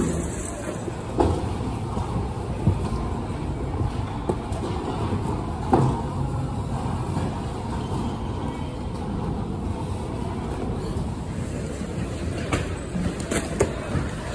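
Steady rumbling noise of a busy warehouse floor, with a few sharp knocks and clatters as items are picked up and dropped among the bins and cart.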